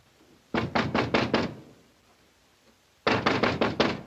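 Fist knocking hard on an apartment door: two bouts of rapid knocks, about five from half a second in and about six more starting about three seconds in, with a pause of about a second and a half between.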